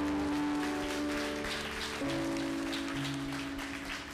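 Congregation applauding over held chords from the band on stage; the chord changes about halfway through.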